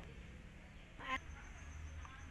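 Quiet background with a low steady hum, broken about a second in by a single short animal call.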